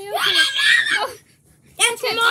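A child's voice in high-pitched wordless cries, twice: the first lasting about a second, the second starting near the end.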